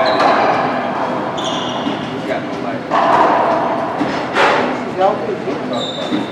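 Racquetball rally in an enclosed court: sharp, echoing smacks of the ball off racquets and walls, the loudest about four and a half seconds in. Short, high sneaker squeaks on the hardwood floor come twice.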